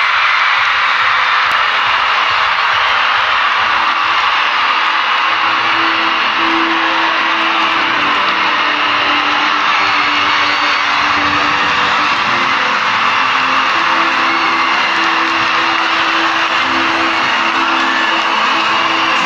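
Loud live coupé-décalé music over a large concert sound system, blended with a big crowd cheering and screaming, as one steady dense wall of sound.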